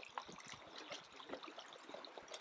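Faint trickling water and small splashes around a paddled canoe: the paddle dipping and water lapping against the hull.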